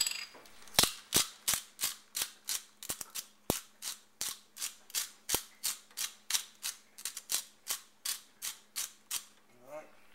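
Hand-twisted spice grinder grinding pepper seasoning: a steady run of sharp clicks, about three a second, stopping about nine seconds in.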